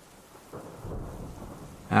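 Rain with a low rumble of thunder that comes in about half a second in, swells and then eases off.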